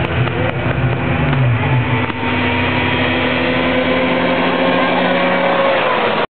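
Snowmobile engines running in a loud, steady drone as the drag race gets under way. A lower engine note drops in pitch between one and two seconds in, while higher notes hold steady.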